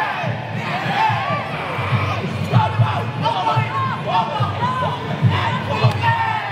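Fight crowd shouting and yelling, with many voices calling out over one another.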